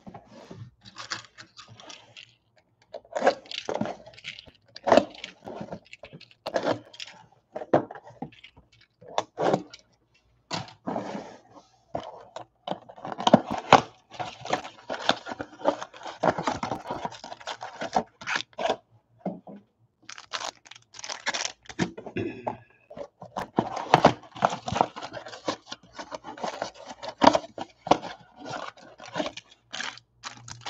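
Cardboard trading-card boxes being torn open and shifted about on a table, and the foil card packs inside pulled out and set down. The result is an irregular run of tearing, scraping and crinkling noises, broken by short pauses.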